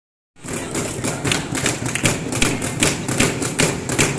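Steady rhythmic percussive beats, about four a second, over a continuous background of hall noise, starting a moment in.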